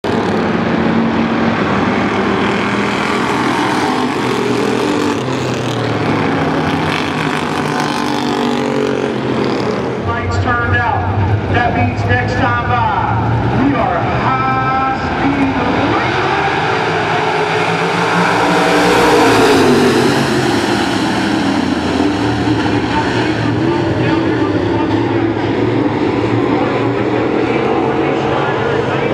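Dirt late model race cars' V8 engines running in a pack around a clay oval, their pitch rising and falling through the turns. The loudest moment is a pass about two-thirds of the way through.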